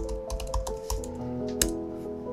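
Laptop keyboard typing: a quick, irregular run of keystrokes as a chat message is typed, ending with a louder tap near the end as it is sent. Soft background music with sustained notes plays underneath.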